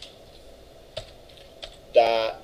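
A few separate keystrokes on a computer keyboard, spaced out rather than a steady run of typing, about four clicks in two seconds.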